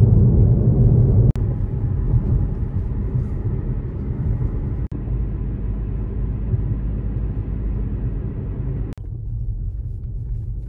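Steady low rumble of car road and engine noise heard from inside a moving car's cabin, changing abruptly in level a few times, about one, five and nine seconds in.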